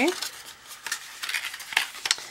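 Stiff cardstock handled and folded by hand along its score lines: a run of dry paper rustles and crackles with a few sharp taps and clicks.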